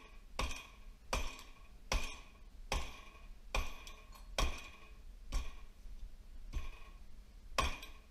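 Repeated hammer blows on a KO3 turbocharger's cast-iron turbine housing, about one a second, each with a short metallic ring. The housing has been heated with a torch and is being knocked loose where it is seized on the turbo.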